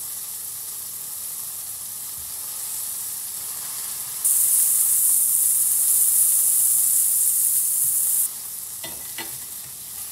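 Beef burgers frying in a frying pan: a steady sizzle that swells much louder for about four seconds from a little under halfway in, while a spatula works in the pan. Two light knocks of the spatula come near the end.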